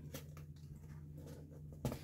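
Faint handling noise from unwrapping a razor's box and paper packaging: light paper crinkles, then one sharp click near the end, over a steady low hum.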